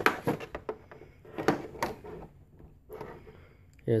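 Handling noise as a Dremel 4200 rotary tool is lifted out of its moulded hard-plastic carrying case: scattered sharp plastic clicks and knocks, the loudest a pair about a second and a half in.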